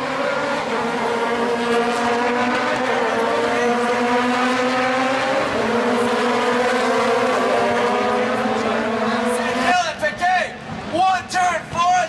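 Rallycross race cars running hard on the circuit: a loud, steady engine note whose pitch drifts slowly up, dips and climbs again. About ten seconds in, the engine sound drops away and a commentator's voice over the public address takes over.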